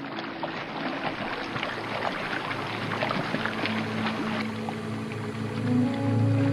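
Water sloshing and streaming with many small splashes and drips as a person rises up out of a river, the water running off his head and body. Soft music runs underneath, a low held note coming in about midway.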